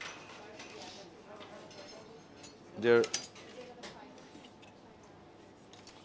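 Quiet background of a working kitchen with light clinks of cutlery and plates, a few sharp clicks just after three seconds. A short spoken word is heard about three seconds in.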